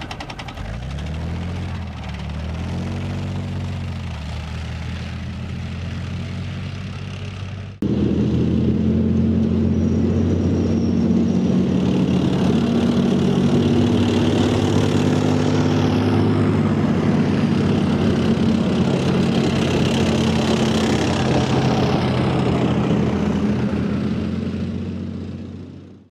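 Leopard 2 tanks' V12 diesel engines running as the tanks drive by, the engine note rising and then falling. A sudden cut about eight seconds in brings a louder, steady heavy-vehicle engine whose pitch shifts up and down, fading out at the end.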